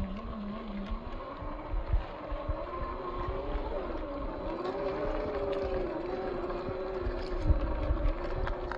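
Brushed 540 35-turn electric motor and gearbox of a 1/10 scale RC rock crawler whining. The pitch rises about a second in and then wavers up and down with the throttle as the truck crawls over rock, with scattered low thumps underneath.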